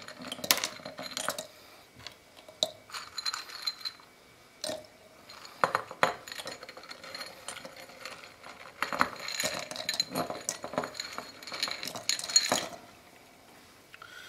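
Refined sugar cubes tipped by hand from a cut-glass bowl into a glass jar, clicking and clinking against the glass and the cut-glass bowl in irregular bursts.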